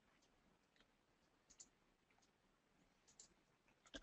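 Near silence with a few faint computer mouse clicks, about one and a half seconds in and again around three seconds in.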